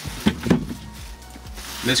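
Hinged bed-extension board being handled over the front seats: two sharp knocks about a quarter second apart, then quiet handling.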